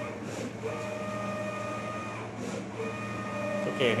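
A sticker cutting plotter running: its motors give a steady pitched whine over a low hum, in runs of about two seconds broken by short pauses.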